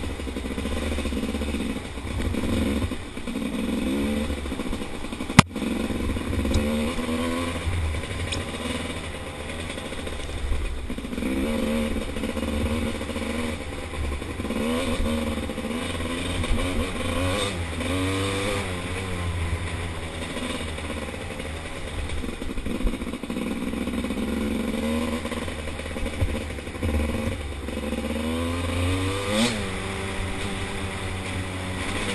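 Dirt bike engine revving up and down as the throttle opens and closes on a rough trail. A single sharp knock comes about five seconds in.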